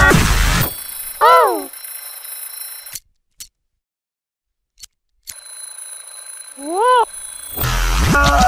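Cartoon soundtrack run through an editing effect. The music breaks off about half a second in. A short rising-then-falling pitched tone with overtones follows, then about two seconds of silence with two clicks. The same pattern then plays back in reverse, the tone sounding again near seven seconds before the music returns at the end.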